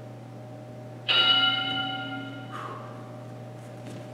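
Interval timer sounding a single bell-like chime about a second in, held for about a second and a half and then cut off with a short ring-out. It marks the end of one exercise interval. A steady low hum runs underneath.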